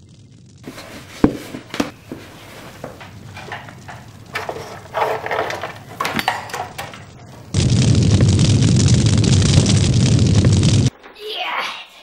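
Film sound effects: scattered knocks and thuds with a boy's short shouts, then about three seconds of loud, steady rushing noise that cuts off abruptly.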